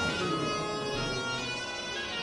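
Music of long, steady held notes over a continuous drone.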